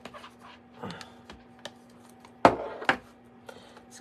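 Light handling noises of craft supplies on a desk, a few small clicks, and one short louder sound about two and a half seconds in.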